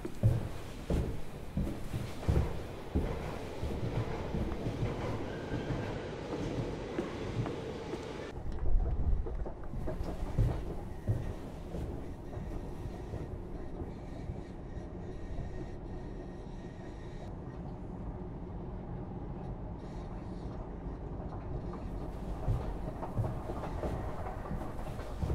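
Footsteps echoing through an underground railway station passage, then a steady low rumble of the station's trains and machinery from about a third of the way in.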